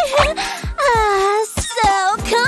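A young woman wailing and sobbing in exaggerated crying, over background music.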